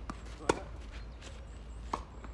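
Tennis racket striking the ball on a serve, a single sharp pop about half a second in. A fainter knock of the ball follows near the end.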